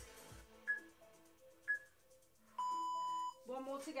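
Interval timer countdown beeps marking the end of a work interval: two short high beeps about a second apart, then a longer, louder steady tone.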